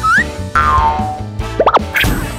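Cartoon boing sound effects over upbeat children's background music: a short rising boing at the start, a longer falling glide soon after, and two quick up-and-down whistle-like sweeps near the end.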